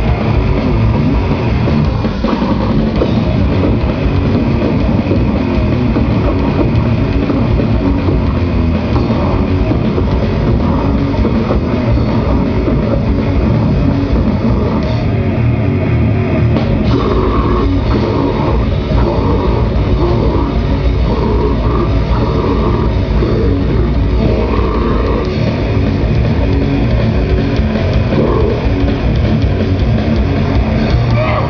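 Grindcore band playing live at full volume: distorted electric guitar and bass over a fast, pounding drum kit. A vocalist shouts into the microphone over the band in the second half.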